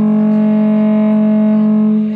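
A live band's sustained amplified drone: electric instruments run through effects pedals hold one steady low note with ringing higher overtones, without drums.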